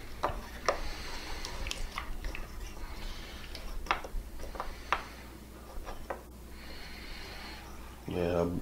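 Faint scattered clicks and taps of a small plastic CA glue bottle and a wooden butter knife being handled on a plywood board, over a low steady hum.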